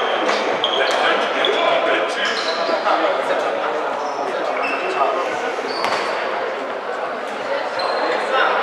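Handball game in a sports hall: the ball bouncing on the wooden floor, short high shoe squeaks, and players' voices echoing in the hall.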